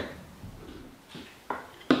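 Quiet room tone in a pause between speech, with a faint short sound about one and a half seconds in.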